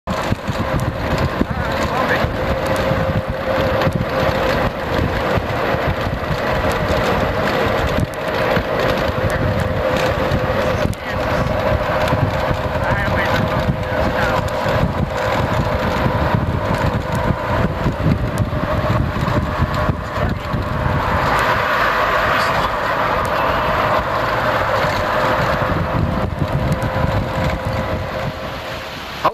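Vehicle driving, heard from inside: steady engine and road noise with a constant drone, wind on the camcorder microphone and frequent small bumps and knocks.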